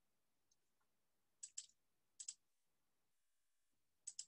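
Near silence broken by two quick pairs of faint computer mouse clicks, about a second and a half in and again just after two seconds.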